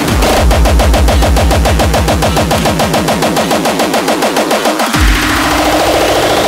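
Hardcore electronic music: a very fast roll of distorted kick drums, each stroke dropping in pitch, hammering in rapid even succession. About five seconds in the roll breaks on one deep kick, then starts again under a rising sweep.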